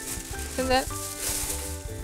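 Sheet of aluminium foil crinkling as it is pulled from its box and spread flat, a dry, crackly rustle, over steady background music.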